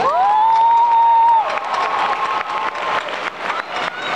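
Audience applauding. Near the start, a loud whistle from the crowd sweeps up and holds one pitch for over a second, followed by a fainter held whistle.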